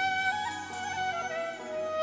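Bansuri (bamboo transverse flute) playing a Bengali folk melody in held, ornamented notes that step down in pitch, over harmonium accompaniment.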